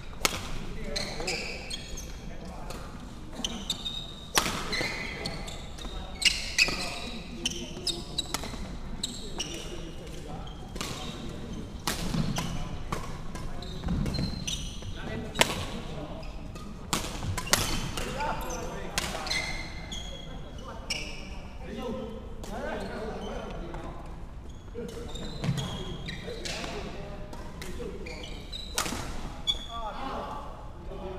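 Badminton play in a large, echoing sports hall: sharp racket strikes on the shuttlecock every second or so, some from neighbouring courts, with brief shoe squeaks on the wooden court floor. Voices murmur in the background.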